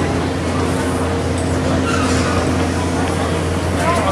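Stationary, coupled E259 series Narita Express electric trains giving off a steady low hum with a faint even whine, with voices faintly in the background.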